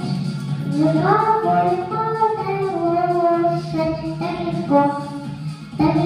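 A six-year-old girl singing a song into a handheld microphone, holding long notes that slide up into each phrase.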